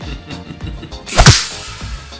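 Background music with a single sharp whip-crack sound effect about a second in, the loudest thing here, its low end falling in pitch.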